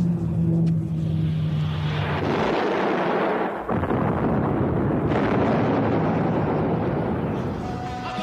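Sound effect of a crashing airliner: a low, steady aircraft engine drone, then from about two seconds in a loud, long crash-and-explosion noise that lasts several seconds.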